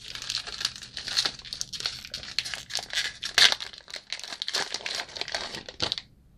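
Plastic wrapper of a trading-card pack crinkling and tearing as it is handled and opened, a dense run of sharp crackles that stops at the end.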